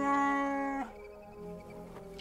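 Chewbacca the Wookiee giving a short, steady moan for about a second, cutting off with a slight drop in pitch, over soft film score.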